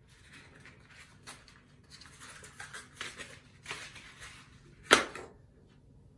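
Cardboard and plastic packaging handled by hand on a wooden table: uneven rustling with many small clicks, then one sharp knock about five seconds in, the loudest sound.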